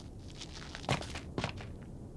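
Two footsteps as an animation sound effect, about half a second apart, over a low background hiss.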